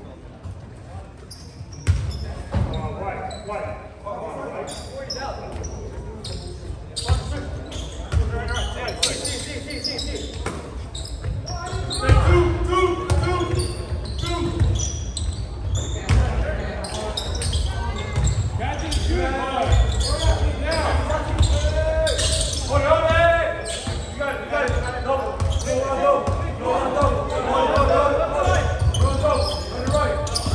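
Basketball dribbled on a hardwood gym floor during play, a run of repeated thuds, with indistinct shouts and voices of players and spectators echoing through the large gym.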